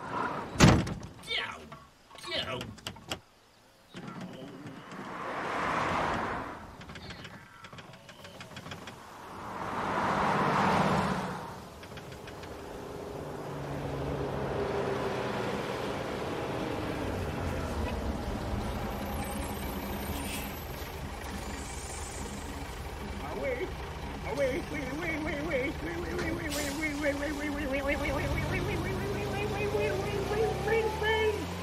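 A few sharp knocks, then two vehicles swelling past one after the other, then a bus engine running steadily. Voices call out near the end.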